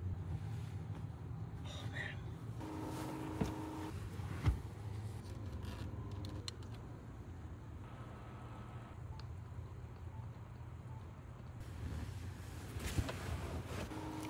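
Steady low hum of vehicle engines in a parking lot, with a few soft knocks.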